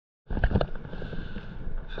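Wind rumbling on the microphone and water moving around a stand-up paddleboard at sea, with a couple of sharp knocks about half a second in.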